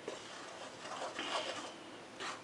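Wooden spoon stirring dry whole wheat flour, salt and yeast in a large mixing bowl: faint, soft scraping strokes.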